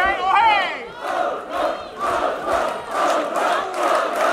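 Fight crowd chanting in rhythm, about two beats a second, with faint claps. A long, wavering shout fades out in the first half-second.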